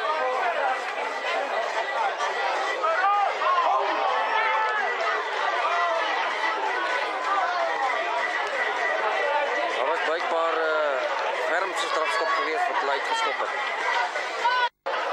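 Several people talking and calling out at once, overlapping voices with no single clear speaker, over a faint steady high tone.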